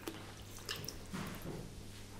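Salt tipped from a small glass cup into water in a glass bowl: faint wet dripping and small splashes, over a low steady hum.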